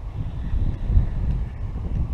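Wind buffeting the camera microphone: a gusty, uneven low rumble.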